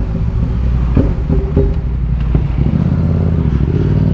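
Yamaha MT-07's parallel-twin engine running at low revs in second gear while the bike rolls slowly, a steady low rumble with a few light knocks about a second in.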